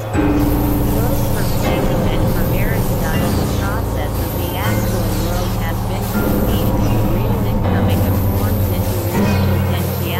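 Experimental electronic noise music built from synthesizers: layered low drones under a dense mass of short gliding, chirping tones. The low drone shifts in pitch and loudness a few times, about half-way through and again near the end.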